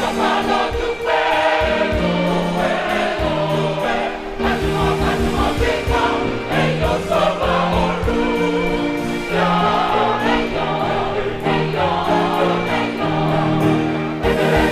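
Mixed choir of women and men singing a gospel song in held, multi-part harmony, the notes changing every half-second to second.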